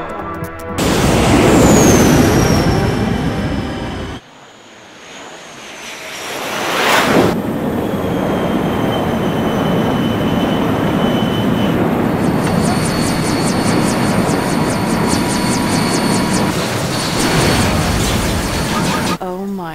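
Jet aircraft sound effect for an animated flying-wing craft. A rushing whoosh lasts about four seconds, drops away briefly, then swells to a fly-past peak about seven seconds in. After that comes a steady engine rush, with rapid high ticking from about twelve seconds in.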